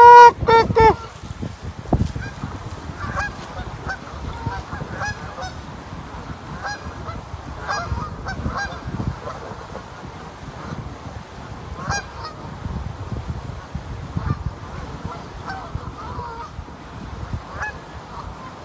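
Canada geese honking. A few loud honks come close by in the first second, then fainter, scattered honks follow from the rest of the flock.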